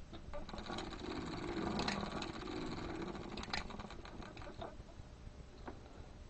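Circular sock machine being hand-cranked during a cast-on: a rapid run of fine mechanical clicks over a low whir for about three seconds, then a few scattered clicks.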